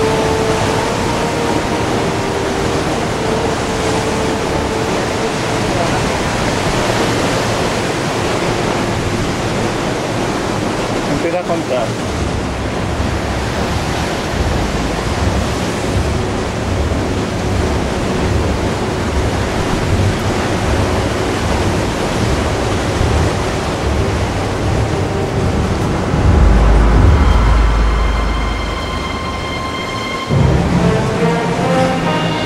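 Wind blowing hard over the camera microphone: a steady rushing noise, joined from about halfway through by low buffeting gusts, the strongest a few seconds before the end.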